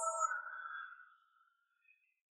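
A soft, ringing sound-effect tone with a high shimmer at its start, fading away within about a second and a half.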